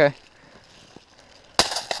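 A single loud, sharp crack about one and a half seconds in, with a short scatter of noise after it; a faint click comes just before.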